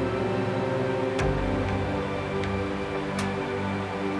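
Background music of sustained chords. The chord changes with a soft hit about a second in, and another light hit comes about three seconds in.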